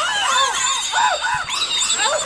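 A man screaming in short, panicked yells that rise and fall several times, with shrill squeals above them, as he thrashes in bathwater.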